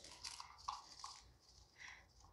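Near silence with a few faint, brief rustling and scraping noises.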